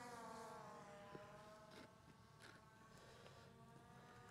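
Very faint, steady whine of a Skydio 2 quadcopter's propellers in flight, several pitches together, easing slightly lower in the first second and then holding.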